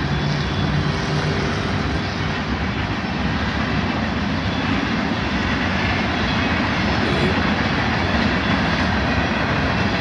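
Freight train rolling past, a steady rumbling roar of its cars on the rails.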